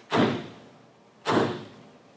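Hand striking the closed lid of a grand piano in a slow, steady beat: two thumps about a second apart, each dying away quickly.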